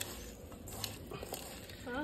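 Soft, wet squishing of a hand mixing spice-coated small fish with chopped tomato and chilies in a steel bowl, with a few faint clicks.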